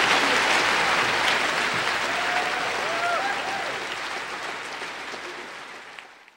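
Large audience applauding, with a few voices calling out a little after two seconds in; the applause fades away near the end.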